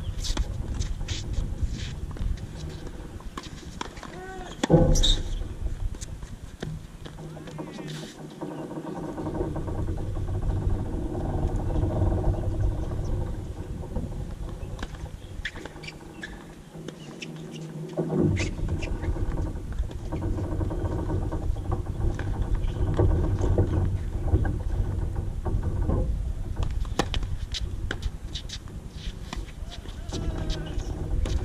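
Tennis ball struck by a racket a few times near the start and again near the end, over a steady low rumble of wind on the microphone that briefly drops away twice.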